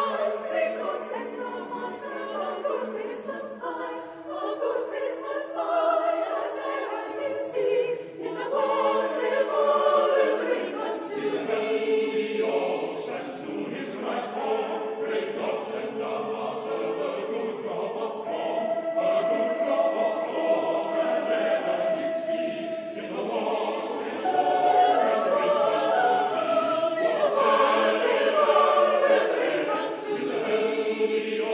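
A mixed choir of women's and men's voices singing a Christmas carol in sustained, held notes, growing louder in the last few seconds.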